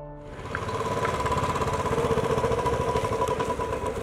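Royal Enfield Bullet single-cylinder motorcycle engine running with a fast, even thumping, coming in about half a second in.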